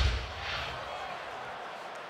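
A wrestler's body slamming onto the ring mat with a heavy thud at the very start, then steady arena crowd noise.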